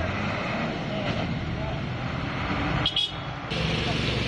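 Water-tanker truck engine running in the street, with indistinct voices in the background and a short sharp knock about three seconds in.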